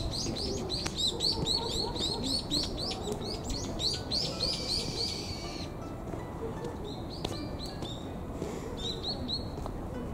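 A small bird chirping in a fast run of short, high notes, about four or five a second, for the first five seconds or so, then a few scattered chirps near the end, over a steady low background rumble.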